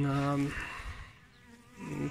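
Honey bees buzzing faintly at a hive entrance, after a man's drawn-out word in the first half second.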